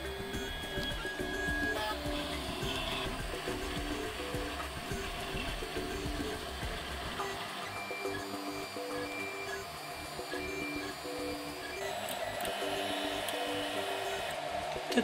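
Prusa i3 A602 RepRap 3D printer printing: its stepper motors give a string of short whining tones that jump in pitch with each move, several a second, over a steady hiss.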